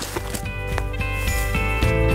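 Background music with a steady beat, starting at once and building in level.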